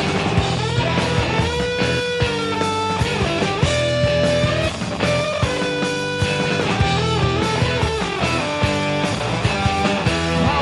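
Live rock band playing an instrumental passage with no singing: electric guitars and a drum kit. Held lead guitar notes bend up and down in pitch over a steady beat.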